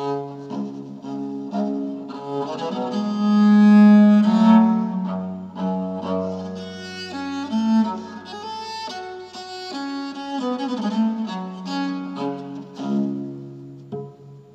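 Division viol (a viola da gamba) played with the bow, with several notes sounding together in chords and running notes, and a low note held through the middle.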